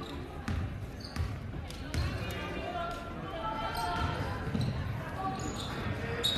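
A basketball being dribbled on a hardwood gym floor, with a few sharp bounces in the first two seconds. Crowd and bench voices chatter throughout.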